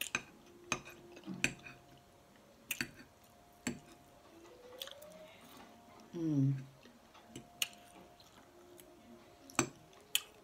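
Eating sounds: chewing with scattered sharp clicks and taps of a metal fork on a glass plate. About six seconds in comes a short falling hum from the eater, the loudest sound.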